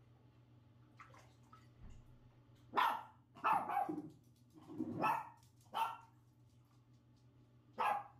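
A dog barking: a run of short barks about three to six seconds in, then one more near the end.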